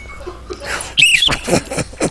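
Hearty laughter: a high squealing laugh about a second in, the loudest moment, followed by a run of short laughing bursts.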